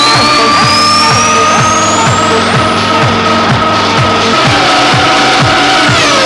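Progressive techno from a DJ set: a steady four-on-the-floor kick at about two beats a second under sustained synth tones, with a long synth sweep rising in pitch over the first half.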